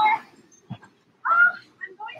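A woman's brief high-pitched squeal about a second in, bending in pitch, with a short click before it and shorter vocal bits near the end.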